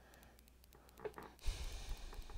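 Mostly quiet room tone, then in the last half second a brief rustle and low bump as hands work yarn onto a Tunisian crochet hook.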